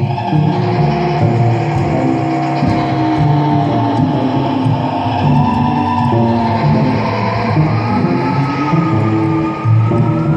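Free improvised music for cello and iPad electronics: dense, layered sustained tones and textures, with a high tone gliding slowly upward over the last few seconds.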